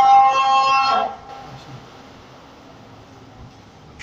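A long held sung note from a chanting voice, ending with a slight downward bend about a second in. Quiet hall murmur follows.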